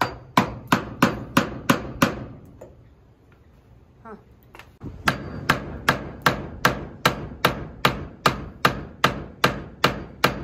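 Steel claw hammer striking the handle of a screwdriver held against a wooden frame, driving it into the wood like a chisel: six quick sharp strikes at the start, a pause of about three seconds, then a steady run of about a dozen strikes, roughly two and a half a second.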